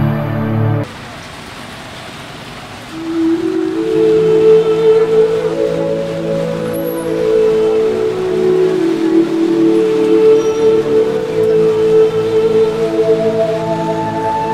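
A short musical sting ends about a second in, leaving steady rain falling on its own for a couple of seconds. From about three seconds in, slow, sustained ambient music plays over the rain.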